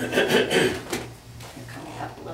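A person coughing, a rough burst in the first second, followed by quieter handling sounds.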